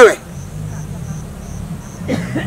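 A high-pitched insect chirp, repeated evenly two to three times a second, over a faint low steady hum.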